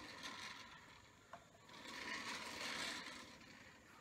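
Faint scraping of a rib being drawn over the rim of a clay plate, swelling twice, with one small tick a little over a second in.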